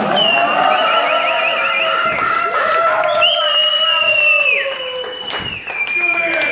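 Concert audience applauding, cheering and whistling. Two long shrill whistles ride over the applause, the first wavering and the second held steady for about a second before dropping off.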